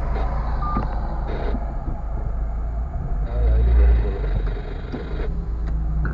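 Low rumble of a car's engine and tyres heard from inside the cabin while driving slowly in traffic; the rumble swells briefly about halfway through.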